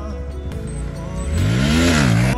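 Bajaj Pulsar NS motorcycle's single-cylinder engine revving up under background music, its pitch rising over the second half and dropping back right at the end.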